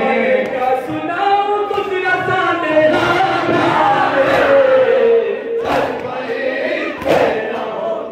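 Men chanting a noha, a Shia lament, through microphones with a crowd joining in. Near the end come two loud, sharp beats about a second and a half apart, as the crowd begins matam.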